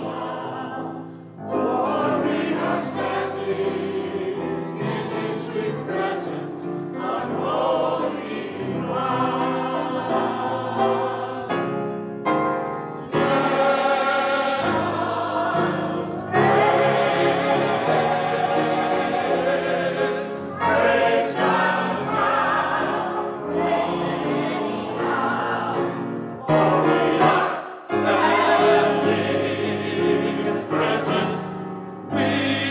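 Mixed church choir singing an anthem with piano accompaniment, in phrases with short breaths between them.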